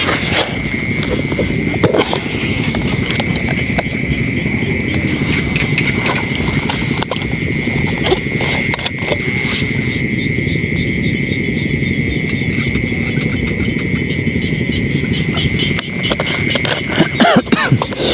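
Night insects trilling steadily at one high pitch over a continuous low rumbling noise, with a few faint clicks.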